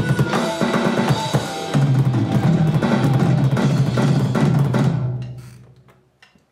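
Roland electronic drum kit played hard along with heavy, low-pitched rock backing music, with bass drum, snare and cymbal hits. The whole mix fades out near the end.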